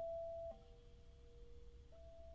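Clarinet playing very soft sustained notes with an almost pure, sine-like tone. A held note breaks off about a quarter of the way in, a fainter lower tone lingers, and a higher note enters near the end.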